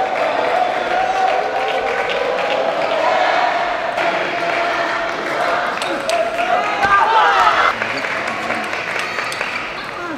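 Table tennis rallies: the ball clicks sharply off bats and table over the steady voices of a hall crowd, with a louder shout about seven seconds in.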